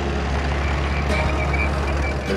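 Road traffic: vehicle engines running with a steady low rumble, and a faint high tone for about half a second just past the middle.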